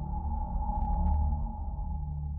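Suspense film score: a low drone under a held, ping-like high tone, with a few quick clicks about a second in.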